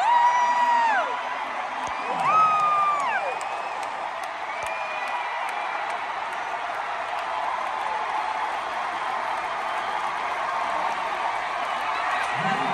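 Large stadium crowd cheering and applauding in a sustained ovation. Two long high-pitched whoops from nearby fans rise above it, one at the start and another about two seconds in.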